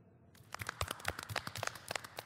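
A few people clapping their hands, with separate claps in quick succession starting about a third of a second in.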